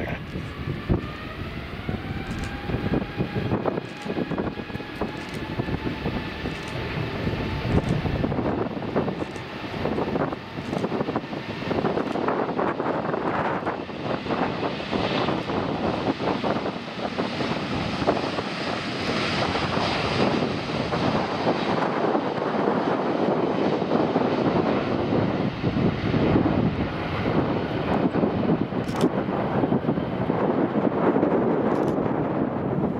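Airbus A350-900's Rolls-Royce Trent XWB turbofans spooling up to takeoff thrust. A whine climbs in pitch over the first few seconds, then a steady, building engine roar carries through the takeoff roll to lift-off.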